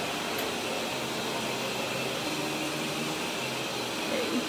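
Steady mechanical hum and rush of air, the room tone of an indoor shop, with a faint low steady hum running under it.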